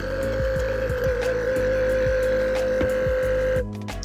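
Dometic GO faucet's small electric water pump running dry with a steady whine, purging leftover water from the faucet and hose. It cuts off suddenly about three and a half seconds in. Background music with a low beat plays underneath.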